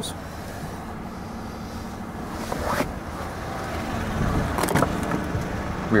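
GMC Sierra 1500's 5.3-litre V8 idling steadily, with two sharp clicks, one just under three seconds in and another near five seconds.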